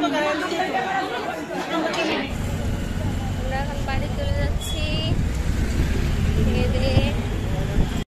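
Many people chatting in a busy dining hall, then, after a cut about two seconds in, a steady low rumble of street traffic and wind heard from a rickshaw ride, with faint voices and a few brief high chirps.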